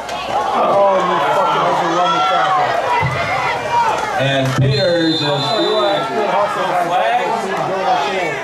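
Spectators' voices talking and shouting over one another in the stands during a football play. About five seconds in, a shrill whistle is held for about a second, the referee's whistle ending the play after the tackle.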